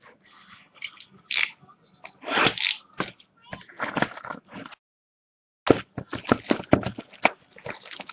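Close handling noises of trading cards and their holders: a few short rustling swipes, a second's pause, then a quick run of light clicks and taps.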